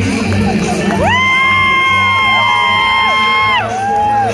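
A tribute singer's voice, amplified through a PA, swoops up into a long high falsetto note about a second in and holds it for about two and a half seconds over the backing track, while the crowd cheers.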